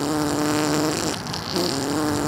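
Tesla Emissions Testing Mode playing its 'Ludicrous Fart' prank sound through the car's speakers twice. Two steady-pitched fart noises about a second long each, the second starting about a second and a half in.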